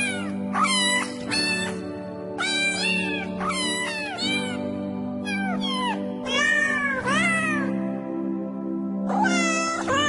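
Cats meowing: a rapid run of short calls that rise and fall, with a pause about three quarters of the way through. Behind them is music with sustained chords that change every few seconds.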